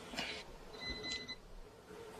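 A single faint electronic beep about a second in: one steady high tone lasting about half a second, over quiet room tone.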